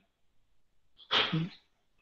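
A single short, sharp vocal sound from a man, about a second in after a silent pause: a hissy burst that ends in a brief voiced sound, lasting about half a second.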